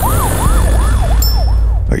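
Emergency-vehicle siren sound effect, its pitch sweeping up and down quickly about three times a second over a deep low rumble, cutting off just before the end.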